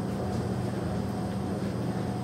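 A steady low mechanical hum with a faint higher whine, even throughout.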